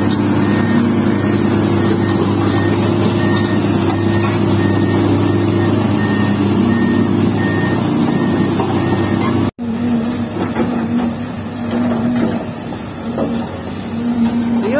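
Large Komatsu hydraulic excavator's diesel engine running steadily close by, with a repeating high beep over it. After a sudden break about two-thirds of the way through, quieter and more uneven sounds of excavators working farther off.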